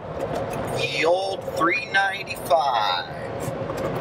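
Steady road noise inside a Jeep's cabin at highway speed, with a person's voice speaking over it from about one to three seconds in.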